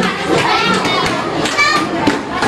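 A roomful of children's voices, many talking and calling out at once, high-pitched and overlapping.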